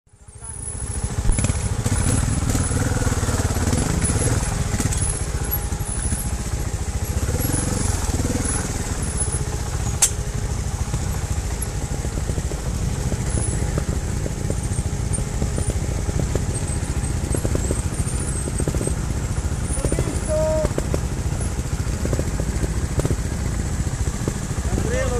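Trials motorcycle engine running steadily at low revs as the bike is ridden slowly over a rocky trail, with a single sharp click about ten seconds in.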